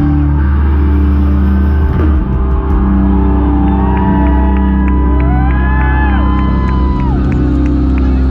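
Live pop-punk/post-hardcore band playing loud through a festival PA, heard from inside the crowd: sustained bass and distorted guitar chords. A high voice wavers and bends over the band in the middle of the passage.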